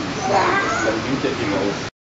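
Indistinct chatter of visitors' voices, with a high voice gliding up and down above it; the sound cuts off abruptly near the end.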